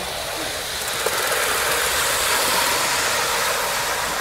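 Gauge 1 live steam model locomotive and its coaches running past close by: a steady hiss of steam and wheels on rail that swells to its loudest about midway, then eases as the train moves on.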